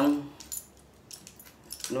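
A few faint, short metallic clicks from a small hex key working loose the clamp bolt of a bicycle brake lever.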